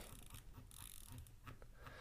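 Near silence: room tone with a couple of faint clicks.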